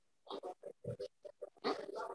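A person's voice in short, broken fragments, as if muttered or cut up by a call's noise suppression, running into a longer, louder voiced sound near the end.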